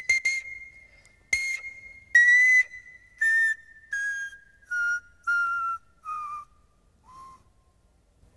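Pan flute playing a descending scale of separate short notes, stepping down about an octave one note at a time, each note starting with a breathy attack; the last, lowest note is softer.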